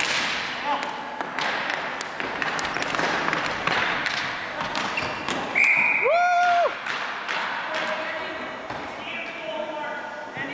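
Ball hockey play in a gymnasium: plastic sticks clacking on the ball and floor, with players calling out, all echoing in the hall. About five and a half seconds in, a short shrill whistle sounds, followed at once by a loud held shout lasting under a second.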